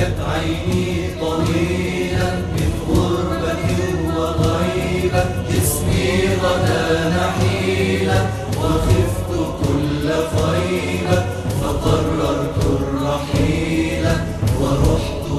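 Arabic nasheed: a chorus of voices chanting a slow melody over a steady low hum, at an even level throughout.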